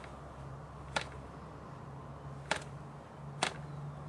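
Cox model airplane glow engine being flipped over by hand. Its propeller snaps round against compression three times with sharp clicks, and the engine does not catch: it is failing to start on its glow plug and nitro fuel.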